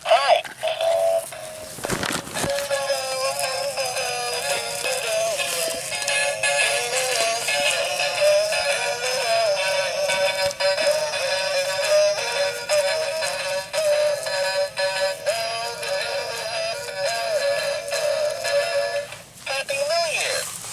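Gemmy Dancing Douglas Fir animated Christmas tree singing a song through its small built-in speaker. The sound is thin, with no bass. It starts suddenly as the tree is switched on, with a click about two seconds in, and stops just before the end.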